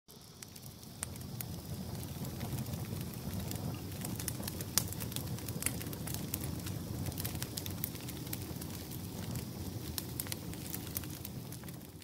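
Wood campfire burning: a steady low rush of flame with frequent, irregular sharp crackles and pops from the burning logs, rising from quiet over the first second.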